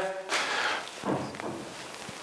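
Faint handling noise, soft rustling and a few light knocks, as a clay bowl is lifted off a banding wheel and carried away.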